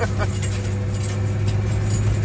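Turbocharged rat rod's engine running at a steady cruise, a constant low drone with road noise, heard from inside the cab.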